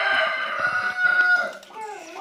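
A rooster crowing: one long, steady-pitched call that fades out about a second and a half in.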